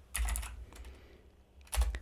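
Keystrokes on a computer keyboard: a short run of typing near the start and another near the end.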